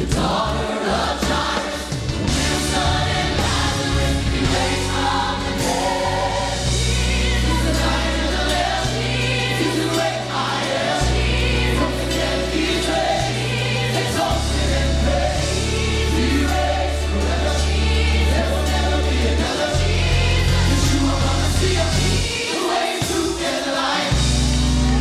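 Large gospel choir singing with live band accompaniment, long held bass notes underneath the voices.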